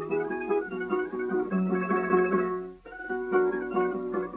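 Tamburitza ensemble with rhythm guitar playing an instrumental passage on a 1912 acoustic 78 rpm record: quick plucked notes in a stepping melody over the chords, with a brief pause nearly three seconds in before the playing picks up again.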